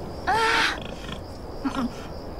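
A pig squeals once, a short harsh call about a quarter second in.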